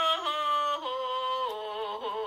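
A lone voice singing long held notes that step from one pitch to the next, the later notes wavering with vibrato.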